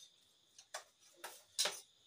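Metal spoons clinking and scraping against steel plates as food is scooped up: three short clicks, the loudest about a second and a half in, over a faint steady high tone.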